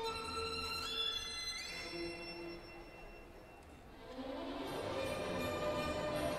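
Recorded violin music with orchestral backing: the violin melody slides upward twice in the first two seconds, the music drops away quietly around the middle, then swells back up near the end.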